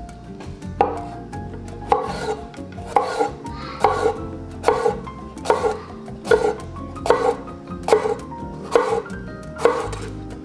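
Chef's knife slicing a red bell pepper into thin strips on a wooden cutting board, each cut ending in a knock of the blade on the board, about one cut a second.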